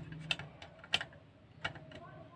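Screwdriver turning a screw in the metal case of a switched-mode power supply: a few sharp metallic clicks and taps, the loudest about a second in.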